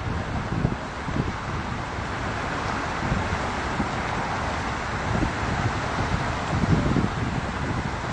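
Highway traffic passing at speed, a steady rushing noise of tyres and engines, with wind buffeting the phone's microphone in uneven low gusts.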